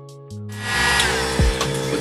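Background music with a steady beat of low drum thumps, and a steady hiss joining about half a second in.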